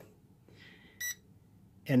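A single short electronic beep from a toy drone's radio transmitter about a second in, as it is powered on to bind with the quadcopter.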